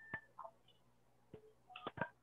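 Near silence, broken by a few faint, short clicks and brief thin tonal blips.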